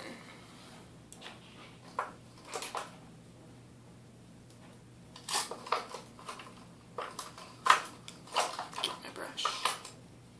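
Small makeup items clicking and clattering as they are rummaged through: scattered short knocks and rattles, coming in clusters through the second half, with the sharpest click about three quarters of the way in.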